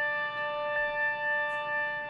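Violin holding one long, steady bowed note, with a faint break near the middle.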